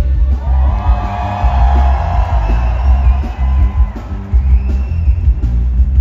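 Punk rock band playing live through a large PA, with drums, electric guitars and a heavy, booming low end. A held, wavering note rises out of the mix from just after the start until about halfway through.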